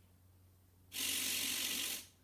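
A television's speaker giving a burst of loud, even hiss for about a second, starting suddenly halfway through and cutting off abruptly while the set switches channels and shows a blank screen.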